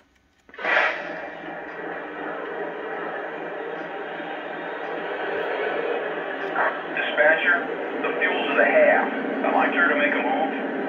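Lionel O-gauge ES44AC model locomotive's onboard sound system: the diesel engine sound starts up suddenly about half a second in and settles into a steady run. From about six and a half seconds in, bursts of radio-style crew chatter come over the same small speaker.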